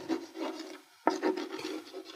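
Chalk writing on a blackboard: a run of short, irregular strokes, with a brief pause just before a second in before the writing resumes.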